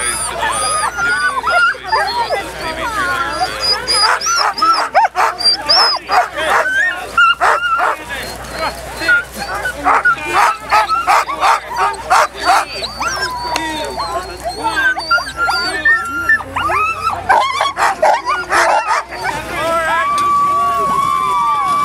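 A team of harnessed sled dogs barking, yipping and whining all at once, the excited clamour of dogs straining to be let go at a race start.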